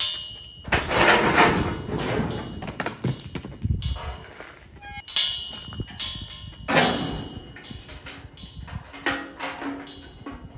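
Background music over repeated metal clanks and rattles from a steel livestock squeeze chute and its gate being worked, with two louder stretches, one about a second in and one near the seventh second.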